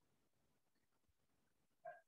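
Near silence: room tone, with one brief faint sound just before the end.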